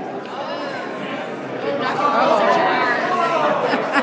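Overlapping chatter of several people in a large, echoing indoor hall, with the voices growing louder and more raised about halfway through.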